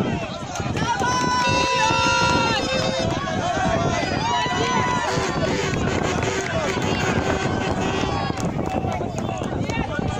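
Spectators shouting encouragement to relay runners: several long drawn-out high-pitched calls in the first half and lower held calls in the middle, over steady crowd chatter.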